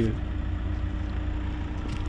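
Steady low background rumble with a faint constant hum, unchanging for the whole moment.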